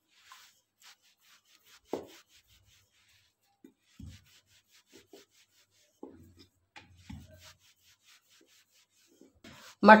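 Wooden rolling pin rolling out a small ball of stiff dough on a round wooden board (chakla): faint, on-and-off rubbing with a few light wood-on-wood knocks.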